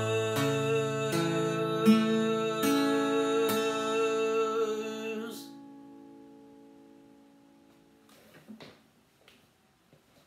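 Acoustic guitar strumming the closing chords of a song, a strum a little under every second, then the final chord left ringing and fading away. A few faint knocks near the end.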